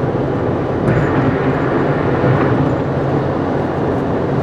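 Steady road and engine noise inside a car cruising at highway speed: an even hiss over a low hum.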